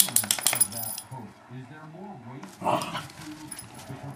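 Metal dog tags on a collar jingling rapidly, about seven clinks a second, stopping about a second in. A short dog vocalization follows near the end, over faint TV speech.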